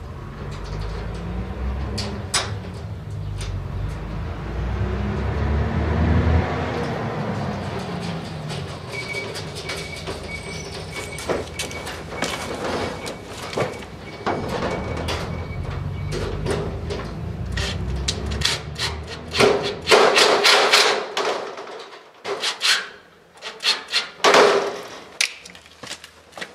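Cordless drill-driver running in two short bursts near the end, driving screws to fit a hasp to a steel locker door, with scattered metal clicks before them. Earlier, a low rumble that swells and fades, like passing traffic.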